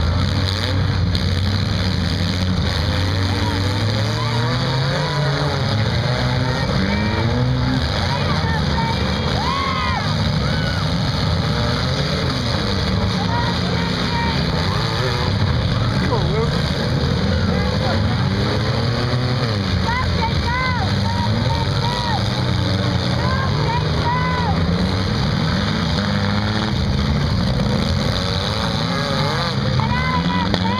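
Several compact demolition-derby cars' engines running and revving at once, their pitch rising and falling, with voices in the background.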